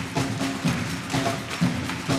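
Wind band playing an up-tempo pops number, with rhythmic hand clapping along to the beat. Sharp claps and beats come about twice a second over a steady bass line.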